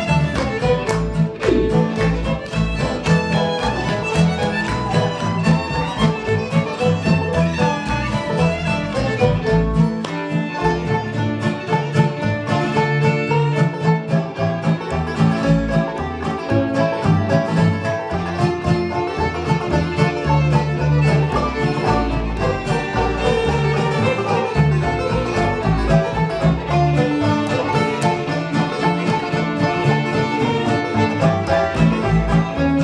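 Acoustic string band playing a lively instrumental tarantella: fiddle leading the melody over strummed acoustic guitar, picked five-string banjo and plucked upright bass.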